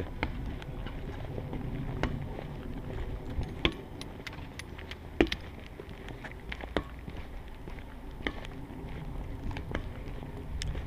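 Wind rumbling on the microphone of a camera carried along at walking pace, with soft knocks about every second and a half.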